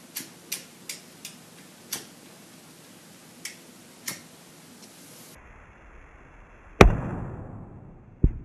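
A cigarette lighter clicking about seven times at an uneven pace in the first four seconds. Then, near the end, one loud guitar chord is struck and left to ring out.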